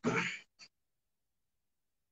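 The tail end of a man's spoken word, cut off about half a second in, then a brief click, then dead silence.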